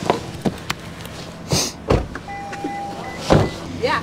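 Car door unlatched with a click, swung open and later shut with a thump as the occupants get out, over a steady low hum; a short steady tone sounds about halfway through.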